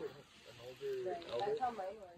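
Faint talking from people in the background, with a gap near the start. There is no other distinct sound.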